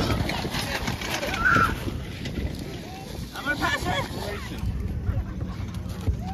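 Indistinct voices calling and chattering at an outdoor gathering over a steady low rumble, with one brief high call about a second and a half in.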